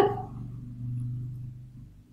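A low, drawn-out closed-mouth "mmm" hum from a person's voice, strongest about a second in and fading out near the end.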